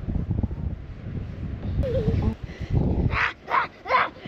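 Wind buffeting the microphone, then from about three seconds in a run of short, high-pitched squeals of laughter.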